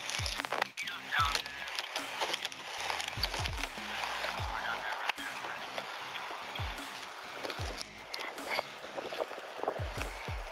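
Clothing rubbing and bumping against a body-worn camera's microphone during close physical handling of a man being detained, with irregular thumps and faint voices.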